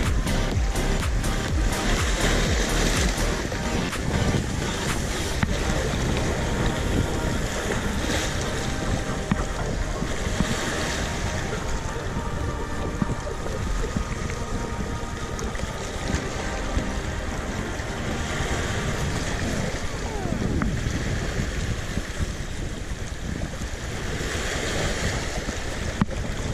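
Small waves washing and splashing over shoreline rocks, with wind buffeting the microphone. Music plays faintly underneath.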